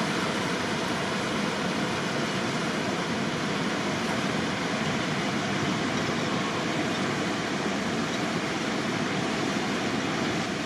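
Steady rush of turbulent river water churning white below a dam.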